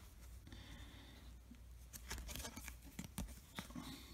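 Faint scraping and soft clicks of a trading card being slid into a rigid plastic top loader, the small ticks coming more often in the second half.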